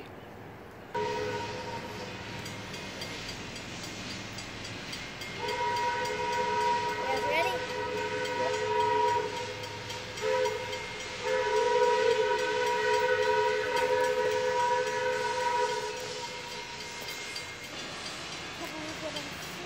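Steam whistle of Iowa Interstate 6988, a Chinese QJ-class 2-10-2 steam locomotive, blowing a chord of several notes as it approaches: long blasts, then a short one about ten seconds in and a final long one, the pattern of a grade-crossing signal.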